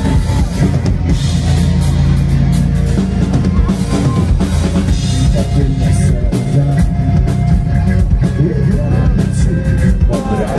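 Live crossover nu-metal band playing loud: electric guitars, bass guitar and a drum kit, the drums driving a steady beat.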